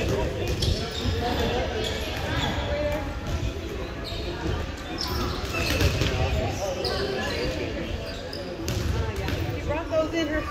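Volleyballs being hit and slapping off a hardwood gym floor, several sharp impacts scattered throughout, over the chatter of many voices, all echoing in a large gymnasium.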